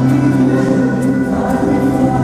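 Music with a choir singing long held chords that change about one and a half seconds in.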